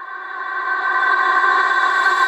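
Electronic music intro: a sustained synthesizer chord swelling steadily louder, with no beat yet, building toward the track's dubstep drop.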